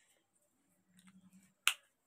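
A single short, sharp click about one and a half seconds in, in an otherwise quiet pause.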